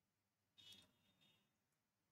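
Near silence: room tone, with one faint short sound just over half a second in and two fainter blips a little later.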